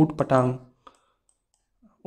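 A man's voice speaks one drawn-out syllable, then near silence broken by a single short click just under a second in.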